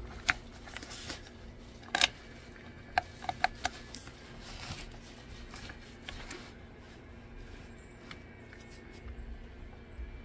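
Handling sounds of a diecast toy car being pushed by hand across a textured mat: a few sharp small clicks, a quick cluster of them about three and a half seconds in, over a faint steady hum.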